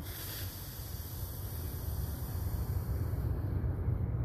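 A long, slow exhalation blown out through pursed lips, a breathy hiss that fades about three seconds in, demonstrating a relaxation breath. Wind rumbles on the microphone underneath.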